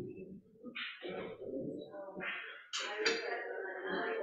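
Indistinct chatter of several people talking in a room, with no music playing.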